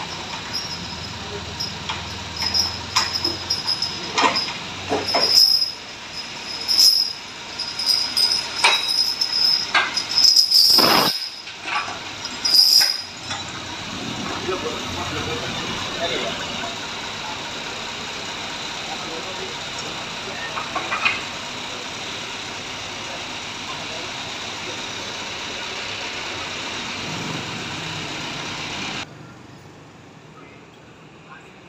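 Repeated sharp metal clanks and knocks from tow-truck rigging and chains being worked on a wrecked truck's front, over a steadily running engine. The knocking stops after about thirteen seconds and the steady engine sound carries on.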